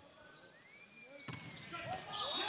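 A volleyball struck hard on a jump serve about a second in, then a second sharp impact about half a second later as it hits the court. A faint whistle rises and falls in the background.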